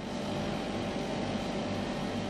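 Steady mechanical hum and whir of laboratory equipment running, with a faint low hum and a few faint steady tones under an even noise.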